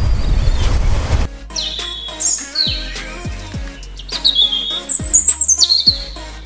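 Background music edited over the pictures. A loud rushing noise cuts off abruptly about a second in, then a deep, falling bass beat carries on with repeated high bird chirps over it.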